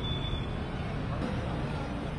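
Street ambience: a steady low traffic rumble with indistinct voices mixed in. A short high-pitched tone sounds at the very start.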